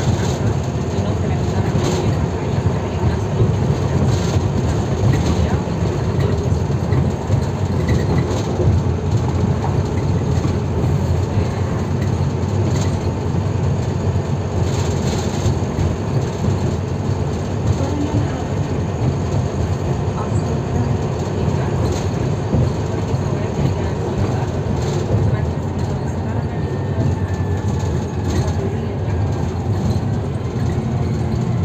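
Inside a moving Volvo B9TL / ADL Enviro400 double-decker bus: the 9.4-litre six-cylinder diesel and road noise make a steady low hum. Short knocks and rattles from the bus's body and fittings come every few seconds.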